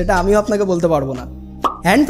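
Narration in speech over a low, steady background music bed, with a short pop about three quarters of the way through.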